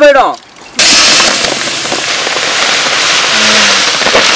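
Food sizzling in a large pan of hot oil: a loud, steady hiss that begins about a second in, after a sung phrase breaks off.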